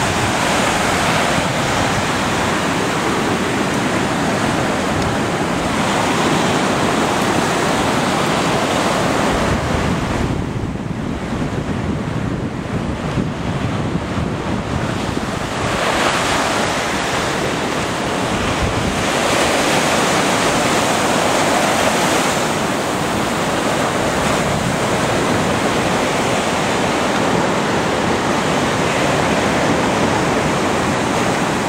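Ocean surf breaking and washing up a sandy beach: a continuous rushing wash that swells and eases as the waves come in, quieter for a few seconds near the middle.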